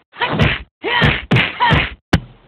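Cartoon fight sound effects: four quick whacks in a row, about half a second apart, as stick-figure fighters trade blows.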